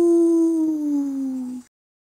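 A person's voice imitating a wolf's howl, "Houuuu": one long held note that slowly falls in pitch and stops about one and a half seconds in.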